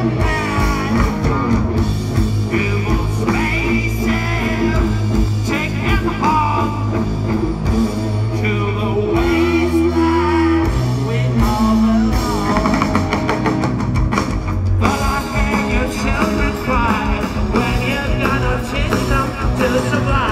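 Live rock band playing at full volume: electric guitars, bass and drum kit, with a singer's voice over the music.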